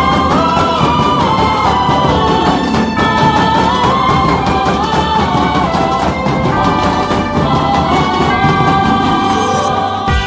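Music: a wavering melody line over dense, steady drumming.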